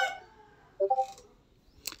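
A chicken in the background: a crow trailing off at the start, then a short two-note call about a second in. A single sharp click comes near the end.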